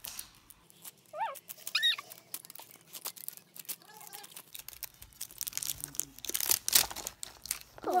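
Hard plastic toy capsule clicking and creaking in a child's hands as fingers pry at its seam, with a denser run of sharp clicks and crackles near the end.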